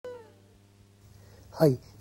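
A man says one short word, "hai", near the end, over a faint low hum; the sound cuts in at the start with a brief tone that fades within a moment.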